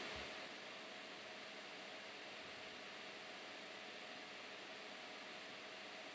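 Faint steady hiss with a faint hum, close to room tone; no distinct event.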